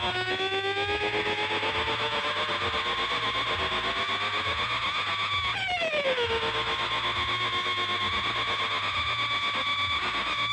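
Intro of an electronic remix: layered, heavily effected synthesizer tones slowly sliding in pitch over a steadily pulsing low note. There is one clear downward pitch sweep a little past halfway.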